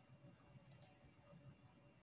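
Near silence: faint room tone, with two quick, faint clicks close together a little under a second in.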